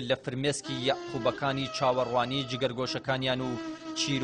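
Background music: a wavering melodic line with strong vibrato over a steady low drone.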